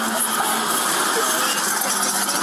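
Steady hiss of outdoor background noise on a police body camera's microphone, with a faint steady hum underneath.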